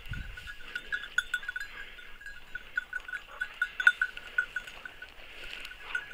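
Hunting dog's collar bell ringing in quick, uneven jingles as the dog moves through the brush searching for a fallen woodcock, with a few sharp clicks.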